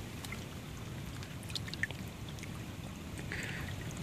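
A hand working in shallow creek water to lift a stone arrowhead off the bed: quiet water sloshing and trickling around the hand, with a few faint ticks and a slightly louder moment a little before the middle.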